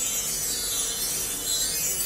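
A high, shimmering chime-like music cue that holds steady, marking a treasure being found.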